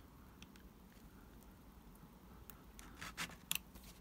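Craft knife blade cutting into a Wills plastic cobblestone sheet to cut out a single cobble: faint, with a few small clicks mostly in the second half.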